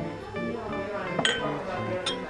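A glass tumbler is set down among other drinking glasses with a single sharp clink about a second in. Background music with acoustic guitar plays throughout.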